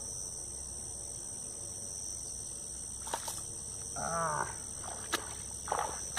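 Steady high-pitched buzzing of insects over a low outdoor rumble, with a brief human grunt or exclamation about four seconds in and a few sharp clicks around it.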